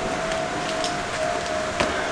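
Steady rain hiss with a faint, steady tone that slowly sinks in pitch. There is a single sharp click near the end as a tool pries at the lid of a tin of body filler.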